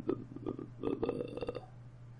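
Several computer mouse clicks in quick succession, mixed with short, low wordless throat sounds from a man.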